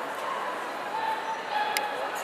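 A dog whining in three short, high-pitched calls, over the steady murmur of a hall; a sharp click comes near the end.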